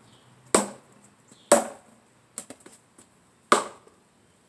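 Talwar striking a tape-wrapped wooden pell: three hard strikes, the first two about a second apart and the third two seconds later, with a quick run of lighter taps in between.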